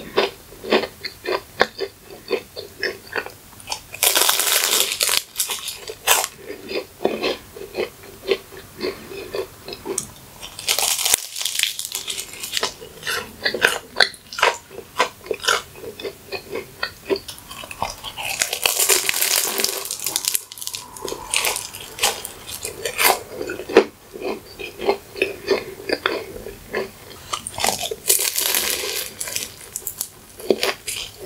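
Close-up eating sounds of a McDonald's pie: crisp pastry crust crunched and chewed in a steady run of small crackles. About four times, at roughly even spacing, a bite breaks off with a louder, longer burst of crackling.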